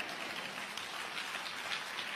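A steady hiss of background noise with no distinct events.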